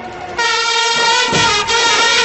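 Brass band of trumpets and saxophones sounding a loud, held chord that starts about half a second in, after a brief softer moment.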